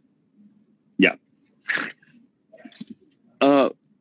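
Speech only: brief spoken interjections, a short "dạ" about a second in, a breathy sound, then a drawn-out "à" near the end.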